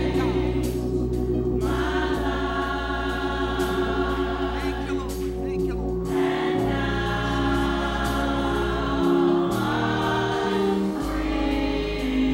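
Gospel choir singing in chorus over sustained low accompaniment notes that shift chord every few seconds, with a steady beat.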